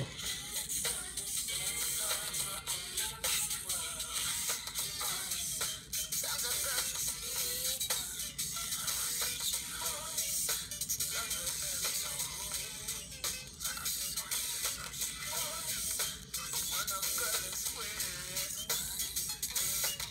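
Music from a vinyl record picked up by a sewing needle and sounded through a paper cone, the record spun by hand: thin, low-fidelity music whose pitch wavers with the uneven speed, under heavy hiss and crackle from the groove.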